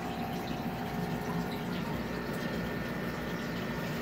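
Aquarium water and air bubbling steadily from sponge filters, with a faint steady hum from the pump running.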